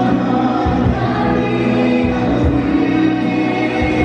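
A small mixed group of two men and two women singing together into microphones, amplified through a PA, over backing music with low bass notes.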